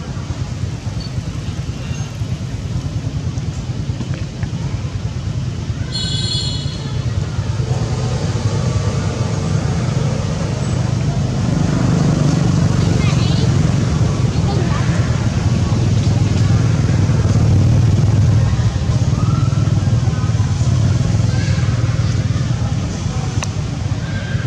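A steady low rumble of motor traffic that swells in the middle, with a brief high-pitched squeal about six seconds in from a newborn baby macaque crying.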